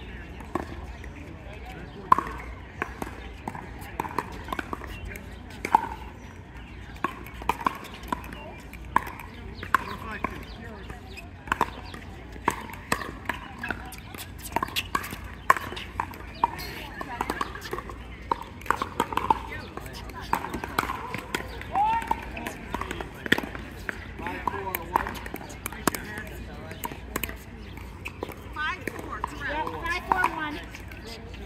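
Pickleball paddles striking a hard plastic pickleball through a doubles rally: sharp clicks every second or so, irregular in rhythm. Background voices are mixed in.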